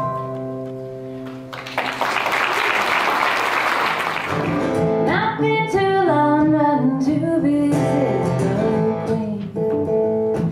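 Live folk band: a held keyboard chord, then a swell of noisy wash lasting about two seconds, then a woman singing over mandolin and acoustic guitar from about halfway in.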